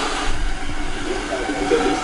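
A steady rushing noise with a low rumble and no distinct events.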